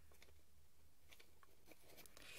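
Near silence: room tone, with a few faint clicks of the glue gun's plastic feed parts being handled.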